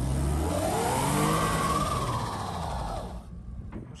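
Toyota SUV's engine revving up and back down over about three seconds while its wheels spin in deep snow, with a loud hiss of tyres and snow under it. The car is stuck on its belly.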